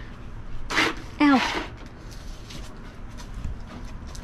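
A person's voice: a short breathy exclamation followed by a spoken "No" falling in pitch, then faint scattered clicks and rustles.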